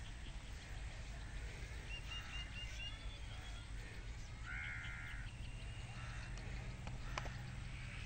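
Birds calling outdoors: a quick run of short high notes about two seconds in, then a harsher call lasting under a second about halfway, over a steady low background hum.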